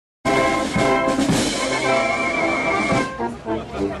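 Brass band music playing held chords of brass, trumpets and trombones; it starts abruptly and softens a little about three seconds in.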